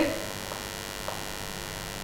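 Steady electrical mains hum under a quiet room, with two faint ticks of chalk touching a blackboard about half a second and a second in.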